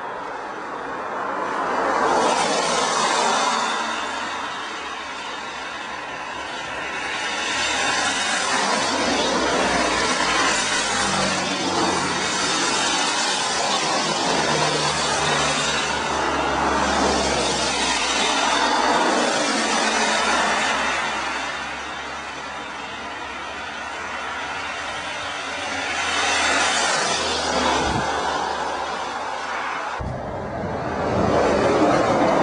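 Cars passing on a wet road, each pass a rising and fading swell of tyre hiss from the wet asphalt with a low engine hum underneath. There are passes about two seconds in, a long run of traffic from about eight to twenty seconds, and another pass near the end.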